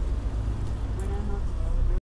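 Low steady rumble of a car engine running close by, with faint voices in the background.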